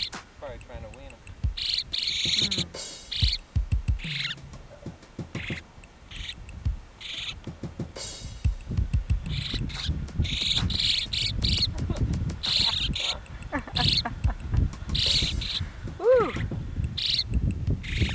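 Yellow-headed blackbirds calling: short, high chips repeated every second or so, over a low rumbling background.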